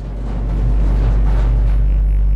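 A deep, low musical drone swells up over the first half-second and then holds steady and loud: a bass-heavy music cue.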